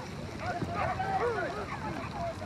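Several voices calling out over one another in short rising and falling cries, over a low rumble.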